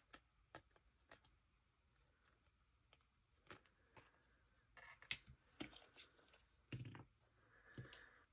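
Near silence with faint, scattered handling sounds: light clicks and taps of a taped carton-and-card embellishment being lifted, shifted and set down on a wooden desk, with a few small clusters about halfway through and near the end.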